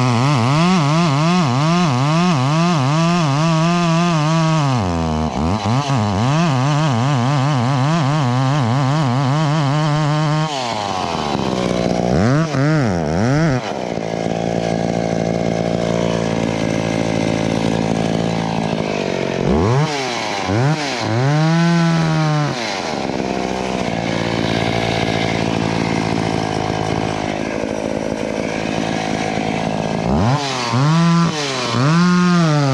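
Two-stroke chainsaw cutting through a tree trunk at full throttle for about ten seconds, its pitch wavering under load. It then revs up and down in short blips and drops to a lower, steady idle between them.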